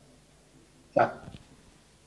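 A single short spoken goodbye, "chao", about a second in, between near-silent gaps.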